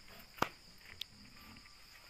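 Faint sounds of piglets rooting on dirt, with two sharp clicks, the first and loudest about half a second in, the second about a second in, over a steady high insect drone.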